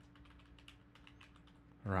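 Computer keyboard typing: a quick run of soft key clicks as a word is typed.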